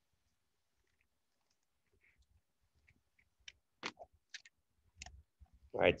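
Near silence, then from about halfway a scattered handful of faint, short clicks and taps, eight or so in two seconds, made by handling a small plastic object on a desk.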